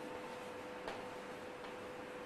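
Chalk writing on a blackboard: a few faint taps of the chalk, over a steady room hum.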